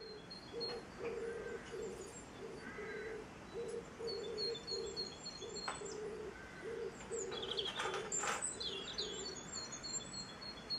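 Background birdsong: small birds chirping while a pigeon coos over and over in low notes, about two a second. A couple of sharp clicks come in the second half.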